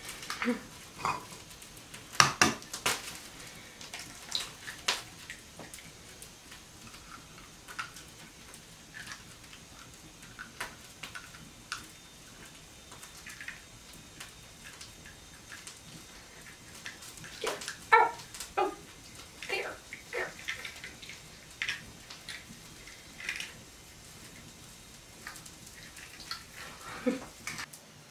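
Scattered taps, cracks and clinks as eggs are cracked against a tin pail and the shells handled to separate the yolks, with the strongest knocks a couple of seconds in and again about two-thirds of the way through.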